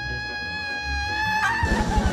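A woman's long scream in labour, rising in pitch and then held on one high note. About one and a half seconds in it breaks off into a noisy rush with fast low pulsing.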